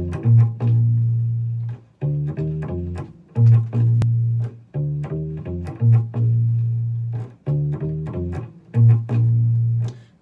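Electric bass guitar played alone: a short riff of plucked notes repeated about every two and a half seconds, each time ending on a held low note.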